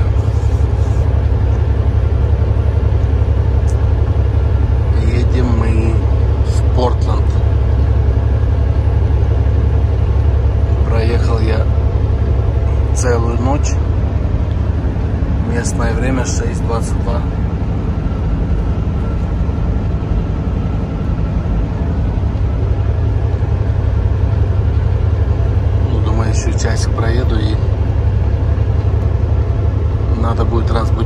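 Steady low rumble of a semi-truck's engine and tyres heard from inside the cab while cruising on the highway. A voice comes through briefly now and then.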